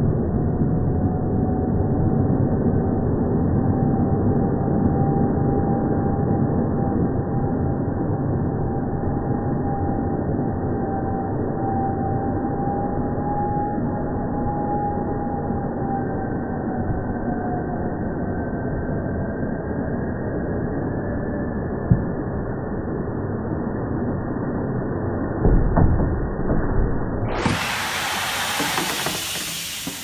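Inflatable liferaft filling from its compressed-gas cylinder, the rush of gas slowed down into a deep, steady rumble with a faint whistle that drifts up in pitch and fades. A few bumps come a few seconds before the end. Near the end the sound returns to normal speed as a full hiss of escaping gas.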